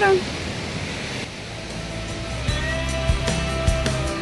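A steady rushing noise of the nearby waterfall, then background music with a held note, bass and a regular beat fading in about halfway through.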